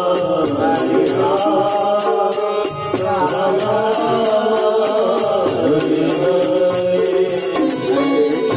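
Devotional kirtan: the names of Hari chanted to music over sustained accompanying tones, with a fast, steady percussive beat.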